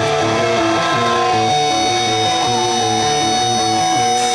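Live rock band opening a song: guitar playing a repeating picked riff of stepped notes under a long held high note, without drums yet.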